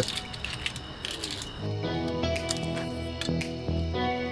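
Background music comes in about a second and a half in, a tune with a regular beat. Before it there are only a few faint clicks.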